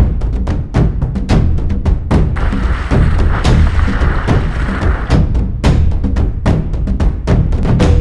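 Background music with a fast, steady percussive beat of drums and wood-block-like hits.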